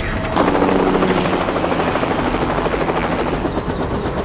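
Helicopter in flight, the fast steady chop of its rotor blades coming in loud about half a second in.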